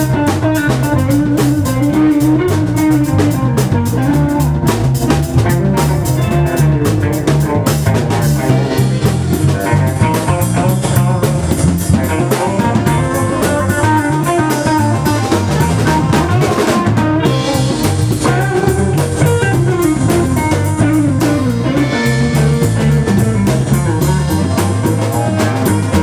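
Live blues band jamming instrumentally: electric guitars, bass guitar and drum kit playing together at an even, steady loudness.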